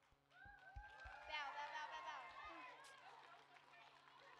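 Faint overlapping chatter and calls of many children's voices, with a few soft low thumps.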